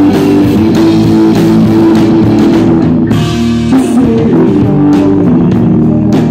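A rock band playing live, electric guitar, bass guitar and drum kit, in an instrumental stretch with no vocals, recorded loud on a phone microphone. The lowest bass notes drop out briefly a little past three seconds in.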